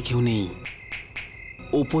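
Crickets chirping in short, repeated high trills.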